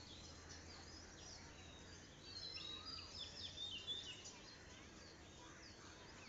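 Faint chirping of small birds, a busy run of short quick calls from about two seconds in until about four and a half seconds, over a low steady hum.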